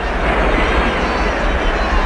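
Storm-at-sea sound effect: wind and heavy waves as a steady, dense noise with a deep rumble underneath.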